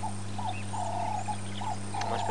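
Birds calling in the bush: a run of short, low notes, one held longer near the middle, with faint higher chirps over a steady low hum.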